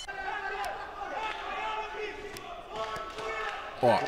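Kickboxing broadcast sound: a commentator talking, with a few short sharp thuds of kicks landing, among them a calf kick to a heavyweight's leg.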